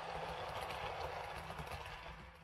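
Model train running past on the layout: a steady whirr of motor and wheels on the track, with a low rumble and a few faint clicks.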